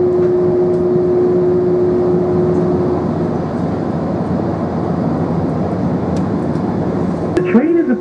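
Airport people-mover train running between stations, heard from inside the car: a steady rumble of the ride with a held tone that fades out about three seconds in. Near the end an automated announcement begins.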